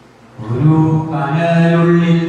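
A man's voice begins chanting a Malayalam poem about half a second in, a sung recitation in long held notes.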